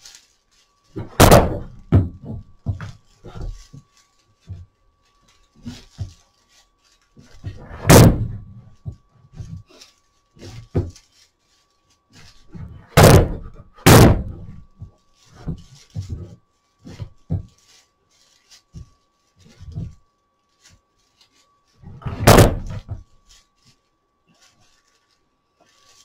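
Handling noise from hand-tying a broomcorn whisk broom with twine: five loud thunks about 1, 8, 13, 14 and 22 seconds in, with lighter knocks and rustling of the broomcorn between them as the wraps are pulled tight and advanced.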